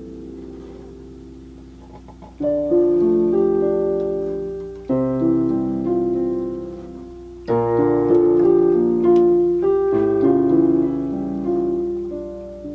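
Solo piano playing a slow, gentle melody: full chords struck about every two and a half seconds, each left to ring and fade, with melody notes sounding over them. The opening two seconds hold only the fading ring of the previous chord.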